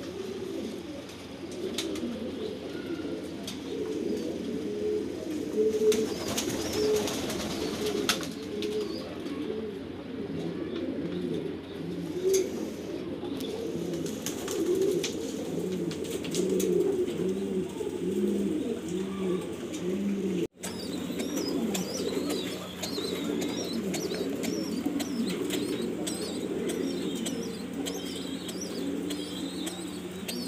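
Many domestic fancy pigeons cooing at once in a loft, a continuous overlapping chorus of low coos. A run of evenly repeated coos stands out in the middle, and the sound drops out for an instant about two-thirds of the way through.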